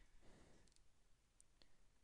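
Near silence: faint room tone with a few small, faint clicks.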